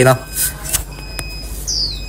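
Old spring-loaded wire bird trap being worked by hand, its trap door pulled open against the spring: a short rustle, a few light metal clicks, and a brief high squeak falling in pitch near the end.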